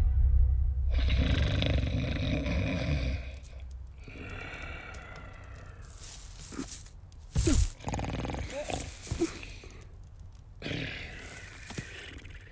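A large cartoon monster snoring in its sleep: slow, deep, rasping snores, loudest in the first few seconds, then quieter breaths with a few short squeaky sounds.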